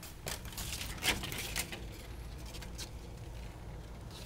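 Vertical window blinds clattering as they are pushed aside, a quick run of light clicks and rattles in the first two seconds, the loudest about a second in.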